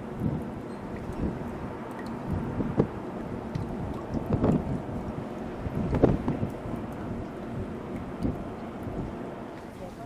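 Wind buffeting the microphone on the deck of a river cruise ship, an uneven rumble with irregular gusts and bumps. Faint voices come through in the background.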